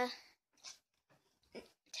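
A girl's voice trailing off at the end of a drawn-out hesitant "uh", then a quiet pause with a few faint small handling sounds.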